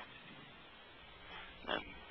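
A pause in a man's talk: a faint steady hiss on the line, with one brief vocal noise from the speaker near the end, like a short grunt or breath.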